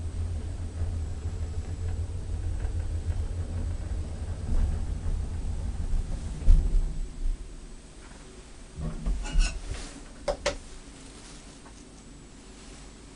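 Antique Luth & Rosén elevator running with a steady low rumble, then stopping with a thump about six and a half seconds in. A few clanks follow about two and a half seconds later, then two sharp clicks.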